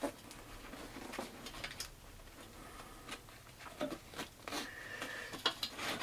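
Faint handling noise as straps are loosened through their buckles on a hunting pack and tree-stand platform: scattered light clicks and rustles.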